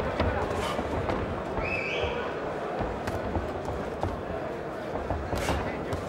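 Crowd voices and shouts in a boxing hall, with scattered dull thuds of punches and boxers' feet on the ring canvas. A brief high-pitched rising call cuts through about two seconds in.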